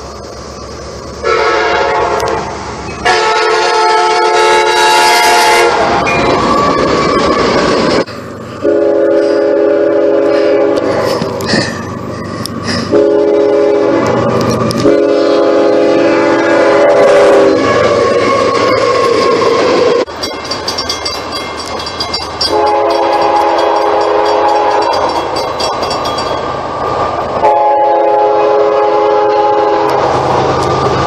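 Locomotive air horns blowing a series of chord blasts, some long and some short, over the rumble of a passing freight train. The horn chord changes pitch abruptly from one stretch to the next, as clips of different trains are cut together.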